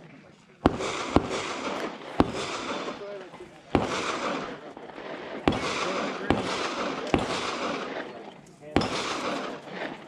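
Pistol shots fired on other stages of the range, heard from a distance: about eight single reports at irregular intervals, each followed by a long rolling echo off the surrounding hills.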